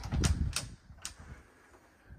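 Three sharp clicks or knocks about half a second apart, the first with a low thump under it, then quiet room tone.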